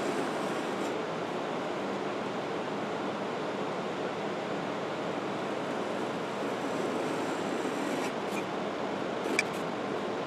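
Utility knife blade drawn along a metal ruler, scoring through a paper template in a steady scratching, with a couple of light clicks near the end as the ruler is moved.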